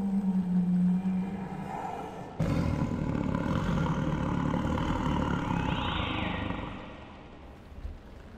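Ominous horror sound design: a steady low drone that dies away, then a sudden loud low rumble that starts about two and a half seconds in, with a brief high sweeping sound near its end, and fades out about seven seconds in.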